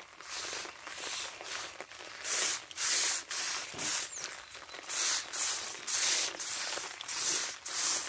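Backpack pressure sprayer's wand spraying liquid foliar fertilizer in a run of short hissing squirts, about one or two a second.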